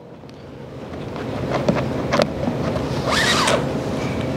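A thin steel BOA lace is pulled through a snowboard boot's plastic lace guides: a rubbing, sliding noise that grows louder, with a few small clicks and a short zip as the cable runs through a guide about three seconds in.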